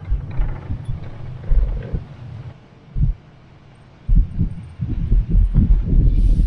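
Wind buffeting the microphone through the open window of a slowly moving vehicle: irregular low rumbling gusts, heaviest over the last two seconds.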